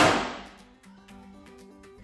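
Whoosh-bottle flare: alcohol vapour burning inside a large plastic water-cooler bottle, a loud rush of flame that fades out within about half a second. Background music with a steady beat continues under it.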